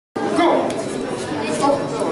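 Indistinct chatter of spectators in a hall, with two short clicks, one under a second in and one near the end.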